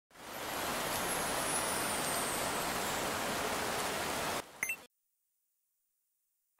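A steady, even hiss of noise like static or rushing rain, fading in and then cutting off suddenly after about four seconds, with a couple of brief blips before silence.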